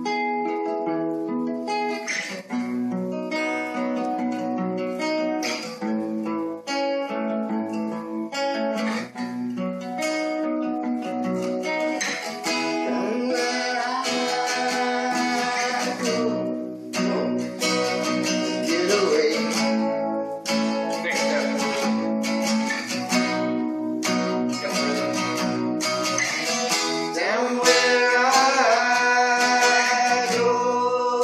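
Two acoustic guitars played together, strummed and picked chords forming the instrumental opening of a song.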